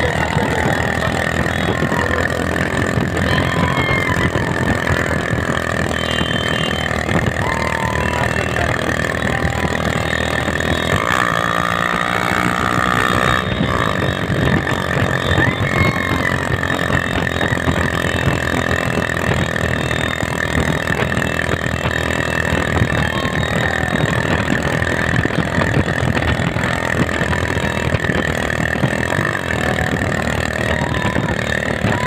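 Many motorcycle engines running together at a steady cruising pace, a dense continuous engine drone with no pauses.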